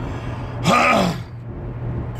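A man coughs once, a short harsh burst about halfway through, from something caught in his throat. A steady low car-cabin hum runs underneath.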